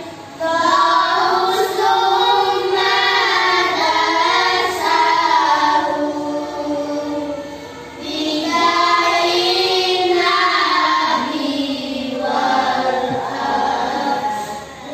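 A group of young girls singing together in unison, in two long phrases with a short break about eight seconds in.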